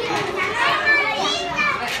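Many young children chattering and calling out at once, with several high-pitched child voices overlapping and no pause.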